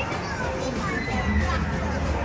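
Children's voices and background chatter from people in the hall, mixed with some music.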